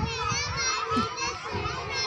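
Many young children's voices at once, chattering and calling out over each other.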